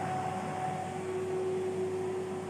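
Tefal Easy Fry & Grill EY505827 air fryer running mid-cook: a steady fan whir with a constant low hum and a faint steady tone.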